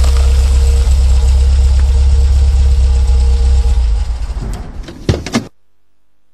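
An engine idling with a steady deep rumble that fades out after about four seconds, followed by a few short knocks and a brief silence.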